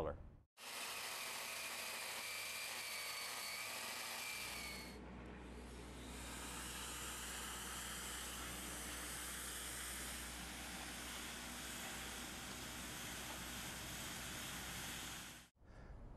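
Steady power-saw noise as the concrete floor joint is recut through the cured spall repair. A whine runs through the first few seconds and fades about five seconds in, leaving a lower, steady machine hum and hiss.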